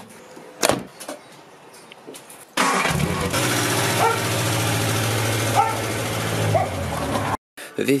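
A Ford Cortina's engine running: a sharp knock about a second in, then the engine bursts into a loud, steady run about two and a half seconds in and cuts off abruptly near the end.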